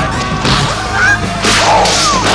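A martial artist's shrill, high-pitched kiai battle cries: two or three short yells that slide up and down in pitch. These are Bruce Lee's signature fighting shrieks, heard over the noise of the fight soundtrack.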